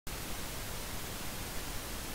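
Steady hiss of background noise with a faint low rumble, the recording's own noise floor before the reading voice comes in.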